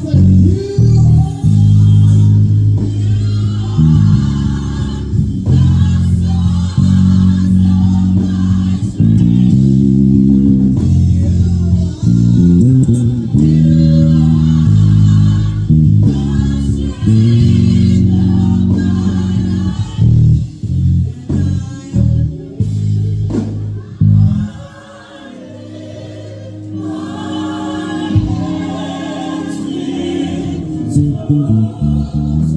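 Five-string electric bass playing a bass line through an old-school gospel medley, with singing over it. About 24 seconds in the bass drops out and the music goes quieter for a couple of seconds before building back.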